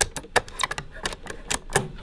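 Accordion treble register switch buttons pressed one after another, a quick, irregular run of clicks as each press pushes the metal register levers over the reed blocks: the switch hooks are engaged and the switches work again.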